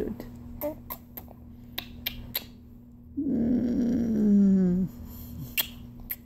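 Lip-smacking kisses on a baby's face: several short, sharp smacks in the first two and a half seconds and a couple more near the end. In between, a woman's voice makes one long sound that falls in pitch at its end.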